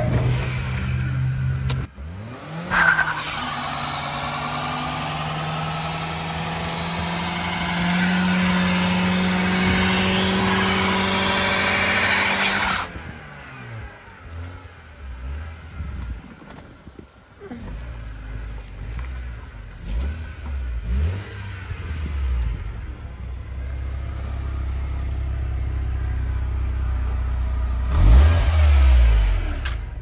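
BMW E46's M43 1.8-litre four-cylinder engine held at high revs while the rear tyres spin in a skid: a long tyre squeal starts about two seconds in and stops suddenly at about thirteen seconds. After that the engine runs at lower revs with several short rises in revs.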